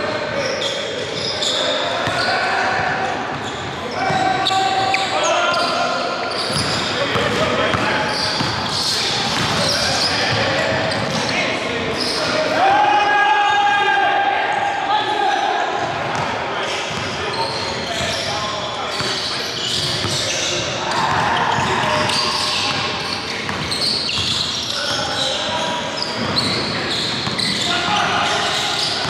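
Basketball bouncing on a hardwood gym floor during a game, mixed with players' voices calling out, all echoing in the large gym.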